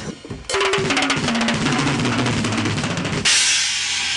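Heavy metal band playing: a full drum kit with rapid bass drum and snare beats over low bass and guitar, starting about half a second in. A loud cymbal crash comes about three seconds in.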